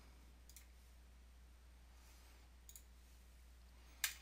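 Near silence broken by two faint clicks, about half a second in and near three seconds in: computer mouse clicks.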